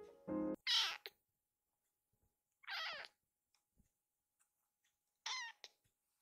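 Baby kitten meowing three times, high-pitched cries each under half a second long, spaced about two seconds apart. Background music stops about half a second in.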